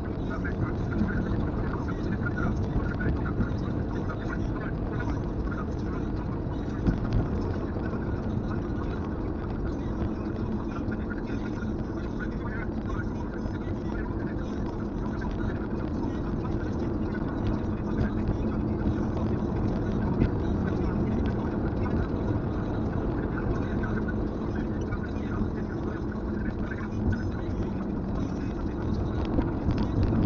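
Steady road and engine noise inside a Kia Carens cabin, cruising at highway speed, with a low hum running underneath.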